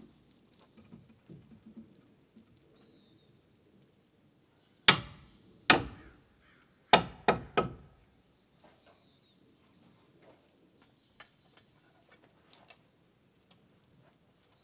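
Hammer driving a nail into a wooden framing board: five sharp strikes over about three seconds, starting about five seconds in. A steady high insect buzz runs underneath.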